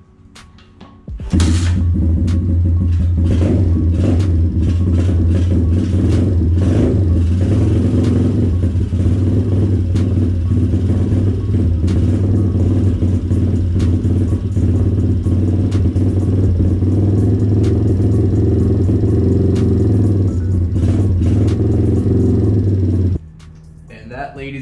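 A 125cc single-cylinder four-stroke pit bike engine starts about a second in and idles steadily, freshly filled with new oil after its first oil change, then is shut off abruptly near the end.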